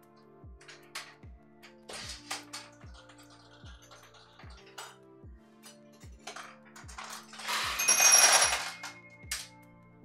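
Vintage pachinko machine: small steel balls clicking off the pins now and then, then, about eight seconds in, a loud rattling rush of balls lasting about a second and a half with ringing tones in it, as a ball lands in a winning cup and the machine pays out balls.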